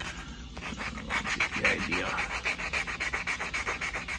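Coarse 80-grit sandpaper rubbed by hand in rapid back-and-forth strokes over a molded-plastic steering wheel, scuffing its slick surface so the epoxy filler will bite. It starts softly, then settles into steady quick strokes.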